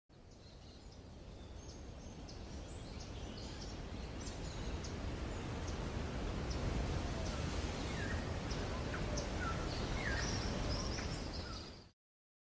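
Outdoor ambience: a steady low background rumble with small birds chirping over it again and again. It fades in slowly and fades out near the end.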